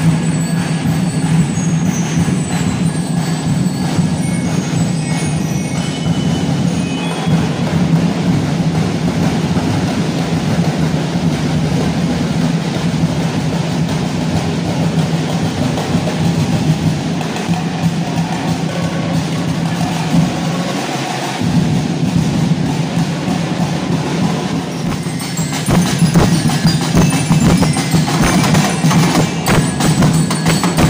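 Music with percussion plays throughout. About 25 seconds in, live drumming from a small drum group comes in with rapid, loud strikes.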